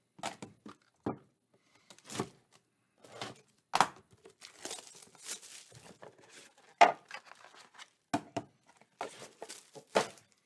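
Clear plastic shrink wrap torn off a box of trading cards and crinkled in the hands: a run of short rustles and crackles, the sharpest about four and seven seconds in.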